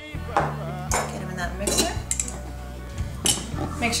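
A glass shot glass and a stainless-steel cocktail shaker clink a few times as liquor is poured into the shaker over ice. Near the end the shaker's metal cap is fitted on. Music with a steady bass line plays underneath.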